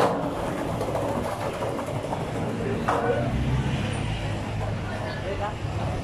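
Street ambience: traffic running with a low rumble that swells about halfway through, and short snatches of passersby's voices.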